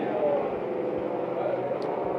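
Indistinct background chatter of several voices over a steady murmur of ambient noise, with no clear words.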